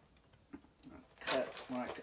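Near silence, then a brief rustle of clear plastic packaging being handled about a second and a half in, followed by a man starting to speak.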